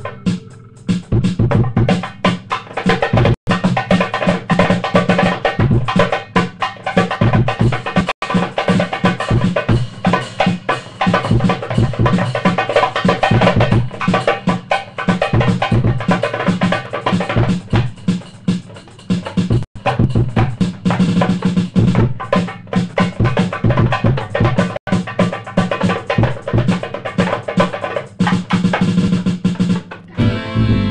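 A band playing music, with a drum kit keeping a steady beat; the sound drops out for an instant a few times.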